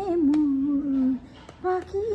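A single elderly woman's voice singing a slow melody: a long held note that slides down and settles lower, a short break a little past a second in, then the tune picks up again on a higher note.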